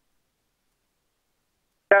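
Dead digital silence: the audio track is cut to nothing. Right at the end, a voice over the aircraft radio starts.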